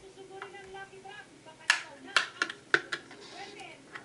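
Five or six sharp plastic clicks in quick succession, about halfway through: the snap-fit clips of a Samsung Galaxy S4's thin plastic back cover popping loose as it is pried off the phone.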